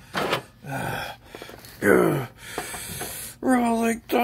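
A man's voice making short gasps and grunts, with a falling groan about two seconds in and a held "ohh" near the end: play-acted wrestling pain noises.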